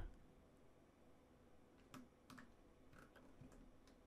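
Near silence, with a few faint clicks of computer keys or a mouse, starting about two seconds in and scattered through the second half.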